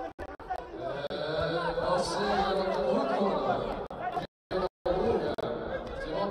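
Several voices chattering and calling over one another in a large hall. The sound cuts out completely twice, briefly, between about four and five seconds in.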